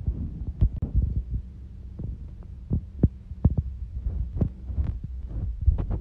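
Handling noise from a phone's microphone: irregular thumps and rubbing as the phone is moved around, over a steady low hum.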